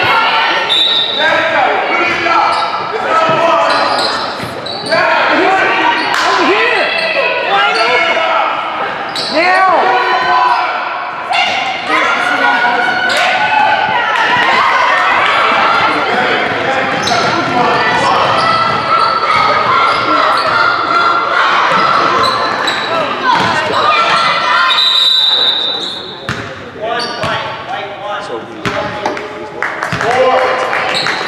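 Spectators' voices calling and chattering in a large, echoing gym over a basketball game in play, with a basketball bouncing on the hardwood court. A short high whistle sounds about a second in and again about 25 seconds in.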